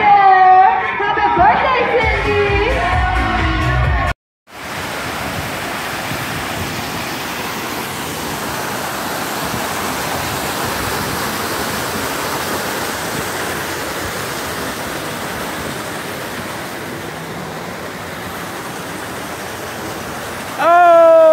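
Pop music with a singing voice for about four seconds, cut off abruptly. It is followed by a steady, even rush of running water.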